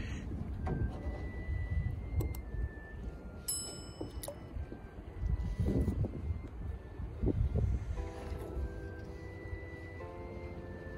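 Sparse background music: scattered held notes, then a sustained chord from about eight seconds in, over a steady low rumble of wind on the microphone.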